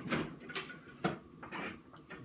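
A few light knocks and clunks of kitchen things being handled, about four in two seconds.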